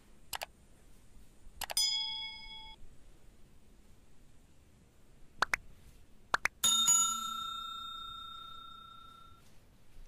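Sound effects of a subscribe-button animation: mouse clicks and bell dings. A click with a short ding comes about two seconds in. Near the middle come a few quick clicks and then the loudest sound, a bell ring that fades away over about three seconds.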